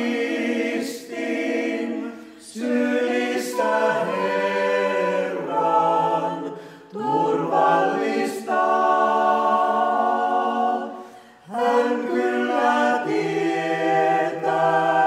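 A small mixed vocal ensemble of three women and three men singing a Finnish hymn a cappella in close harmony. The song moves in several phrases with brief breaks for breath between them.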